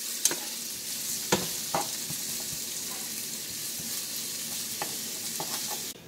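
Sliced bell peppers, onions and scotch bonnet sautéing in oil in a nonstick pan: a steady sizzle, with a few sharp knocks of the utensil against the pan as the vegetables are stirred.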